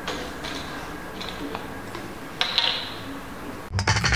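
A few light clicks and knocks of a plastic water bottle being handled on a tabletop, the loudest about two and a half seconds in. Music starts just before the end.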